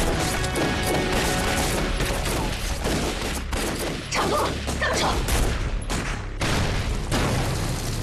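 A film gunfight: a dense, continuous exchange of pistol and rifle shots in quick succession, with a music score underneath.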